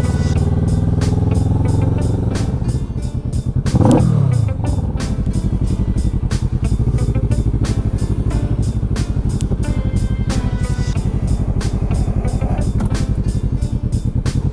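Kawasaki ER-6n's 649 cc parallel-twin engine slowing down at first, then briefly revved about four seconds in, then running steadily at low revs while the bike moves slowly through traffic. Background music with a beat runs underneath.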